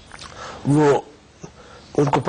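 A man's voice: one drawn-out vowel sound lasting about half a second, coming about half a second in, with low room noise around it.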